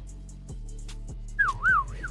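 A person whistles briefly about one and a half seconds in, the pitch sweeping up and down twice. Background music plays throughout.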